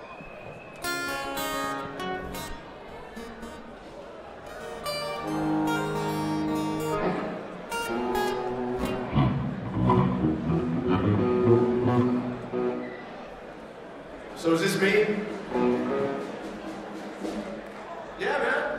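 Acoustic guitar being picked and strummed in short, separate phrases with gaps between them, including a held chord and a run of single notes.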